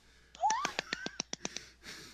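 A woman's high-pitched squeal of laughter that rises in pitch, then breaks into a rapid cackle of sharp clicking pulses, about eight a second, over a video call.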